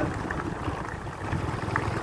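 Wind rumbling on the microphone, a steady low rumble with no distinct event.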